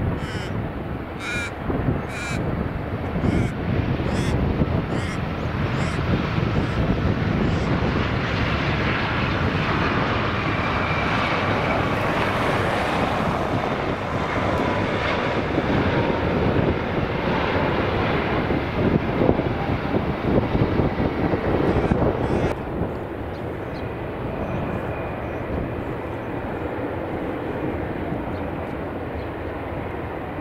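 Airbus A320 jet engines during a landing: the noise builds as the airliner touches down and rolls out along the runway, and is loudest a little after the middle. Over the first few seconds a bird calls repeatedly, about two calls a second, fading away. About three-quarters of the way in, the loud noise drops suddenly to a quieter, steady rumble.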